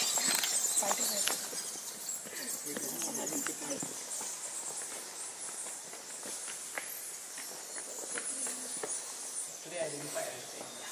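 Many bats squeaking and chittering in a cave, a steady mass of short high calls, with footsteps on stone steps.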